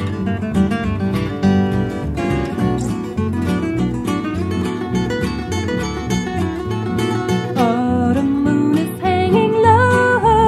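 Instrumental break in a country song: acoustic guitar strumming steadily, with a melody line of sliding, wavering notes coming in about three quarters of the way through.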